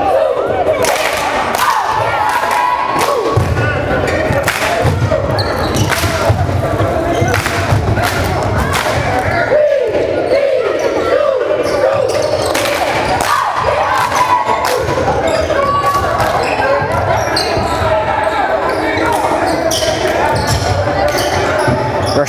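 A basketball dribbling and bouncing on a hardwood gym floor during live play, a string of short sharp knocks, with players' and spectators' voices throughout.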